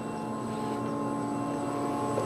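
Prototype Seederal electric tractor powered up, giving a steady electric hum made up of several fixed whining tones, with no engine noise.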